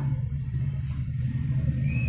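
A steady low hum in the room, with no speech.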